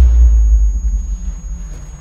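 A deep, loud low rumble that is strongest at the start and fades over about two seconds, with a thin, steady high tone above it: a trailer sound-design boom decaying.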